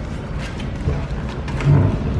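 Paper packaging of a fast-food apple pie crinkling in the hands as it is picked up, with a few light clicks over a steady low rumble. A brief louder low sound comes near the end.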